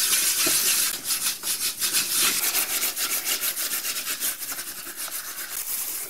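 Hand-scrubbing of an oven door's glass with a dishwasher tablet: a gritty rubbing in rapid back-and-forth strokes that eases off in the last couple of seconds.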